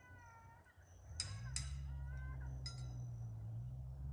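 Several short, high-pitched animal calls, the first drawn out and falling slightly, over a steady low hum.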